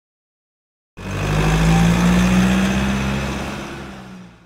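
An engine-like rumble with a steady low hum, starting abruptly about a second in and slowly fading away near the end.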